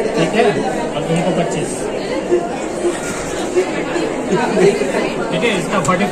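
Crowd chatter: many people talking at once, overlapping and indistinct, at a steady level.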